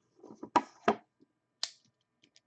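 Hands handling a cardboard trading-card box and its wrapping: a few sharp taps and knocks, the two loudest about half a second and a second in, and another near the end.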